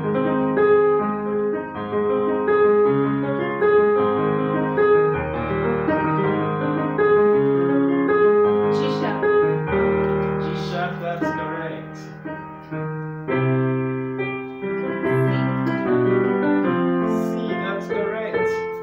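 Casio electronic keyboard in a piano voice playing a passage of sustained chords with a melody on top, the chords changing every second or so without a break.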